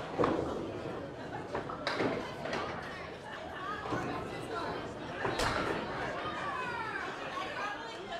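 Candlepin bowling alley ambience: a bed of background chatter broken by sharp knocks of balls and pins, three in all, the loudest about five seconds in.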